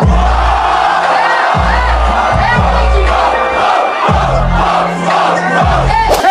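Rap battle audience erupting in loud cheers and shouts after a punchline, over a deep bass beat whose low notes drop in and out in held stretches of about a second.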